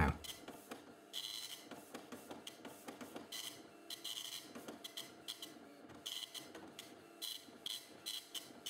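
Dot-matrix impact printer printing a program listing on fanfold paper, faintly, in short bursts of print-head passes about a second or two apart.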